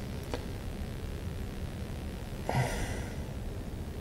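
Quiet, steady background noise with no engine running, a faint click just after the start and a short breathy noise about two and a half seconds in.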